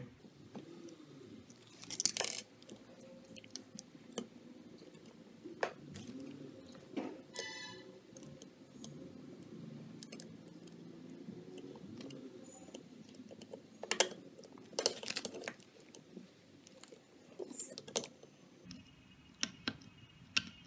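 Small metal parts clicking and scraping as a screw is worked through a metal ball caster into the holes of a metal robot chassis. The clicks come irregularly, with a few louder knocks and a brief ringing tone partway through.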